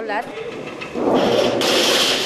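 A voice trails off at the start, then about a second in a loud, steady rushing noise from workshop metalworking equipment swells up and stays loud to the end.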